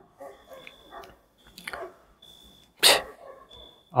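A dog barking faintly a few times in the distance, with one short, loud, hissy burst about three seconds in.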